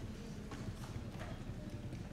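Faint room noise with a low rumble and a few scattered light clicks and knocks.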